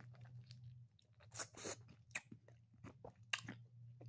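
Quiet pause with a steady low hum and a few short, faint clicks close to the microphone, the loudest about a second and a half and three and a quarter seconds in.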